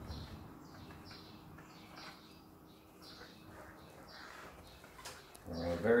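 A small bird chirping: short, high, falling chirps about twice a second, faint.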